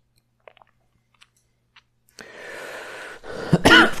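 A man clears his throat with a short cough near the end, after about a second of breathy noise. Before that, near silence with a few faint clicks.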